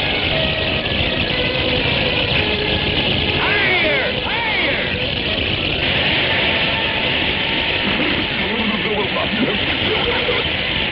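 Cartoon sound effect of fountain water gushing at full force, a steady loud rushing hiss, with a few squeaky rising-and-falling glides about four seconds in.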